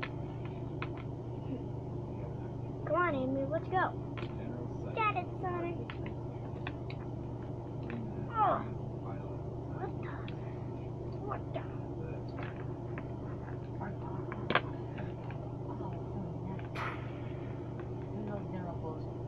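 A child making wordless play noises with his voice: short sliding, wavering vocal sounds, the loudest about three and eight seconds in. Small plastic toy figures click and tap on the wooden tabletop now and then, over a steady low hum.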